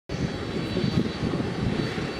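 Boeing 767-300ER's twin turbofan engines at high power for the takeoff roll: a steady jet roar with a fluctuating low rumble and a faint thin whine on top.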